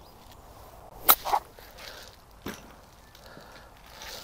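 A golf club swinging and striking the ball on a short chip shot, a sharp strike about a second in followed by a brief swish. A fainter single tap comes about a second and a half later.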